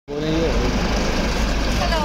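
Steady low rumble of vehicles idling and passing, with voices calling out over it early on and again near the end.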